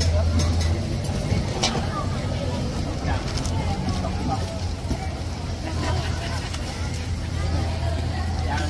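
Busy street-food market ambience: indistinct crowd chatter over a steady low hum that is strongest in the first second, with a few short clicks.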